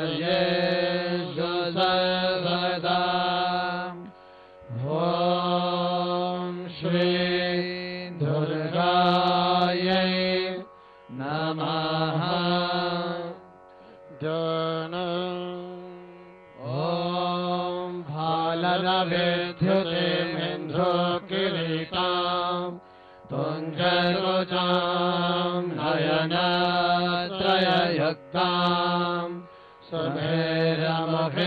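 A man chanting Sanskrit mantras into a microphone, in phrases of a few seconds with short breaks between them.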